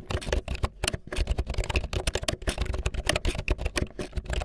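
Fast typing on a Bluetooth membrane keyboard: a dense, rapid run of key presses with a brief pause just before a second in.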